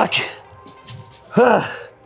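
A man breathing out hard and giving one loud voiced sigh about a second and a half in, worn out after finishing a high-rep set of lifting. Music plays faintly underneath.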